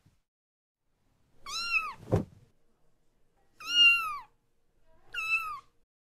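Kitten meowing three times, short high-pitched mews that rise and then fall, with a dull thump just after the first mew.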